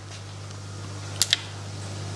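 Two quick sharp clicks a little over a second in, from handling a phosphate checker's small sample cuvette and its cap, over a steady low hum.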